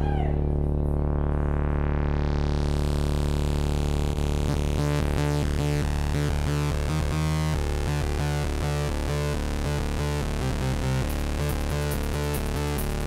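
Live band music opening on a held synthesizer chord that brightens over the first few seconds, with a rhythmic pulsing pattern joining about four seconds in.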